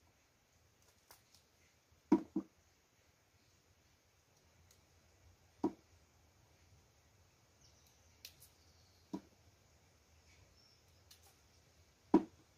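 A few sharp snaps and cracks of plant stalks being broken and picked by hand, spaced a few seconds apart, the first a quick double, over a faint steady background.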